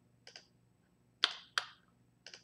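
Computer mouse clicks: two faint ones, then two sharper, louder ones about a third of a second apart.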